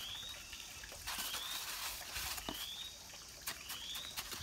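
A bird repeats a short rising whistle about once every second and a quarter, over scrapes and a few sharp knocks, stronger near the end, as a shell bowl scoops grey mix from a pile and tips it into a mold.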